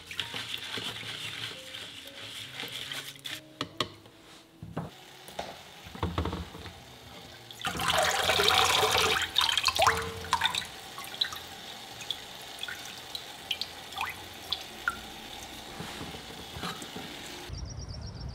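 Rice being washed in water in a plastic rice strainer set in a glass bowl: soft swishing and dripping, then about eight seconds in a louder rush of water lasting about two seconds, followed by scattered drips.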